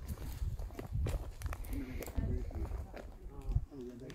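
Footsteps on rough ground, irregular thuds and scuffs, with faint voices talking in the background.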